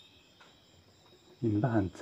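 Faint, steady, high-pitched chirring in a quiet background, then a man's voice starts talking about one and a half seconds in.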